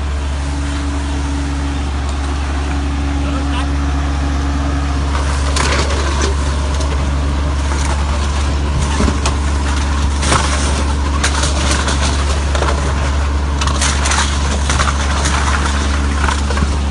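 Truck-mounted Jatayu litter-vacuum machine running with a steady low drone as its wide flexible hose sucks up litter. From about five seconds in, cans and plastic rattle and clatter sharply as they are pulled up the hose.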